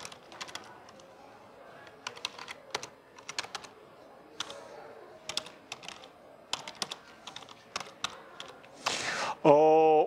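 Typing on a computer keyboard: irregular runs of key clicks. Near the end a man's voice starts with a drawn-out sound.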